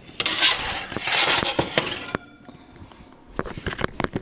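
Wooden peel scraping across a baking stone as it is slid under a baked loaf, two long scrapes in the first half, followed by a few short knocks and clinks near the end as the loaf is drawn out of the oven.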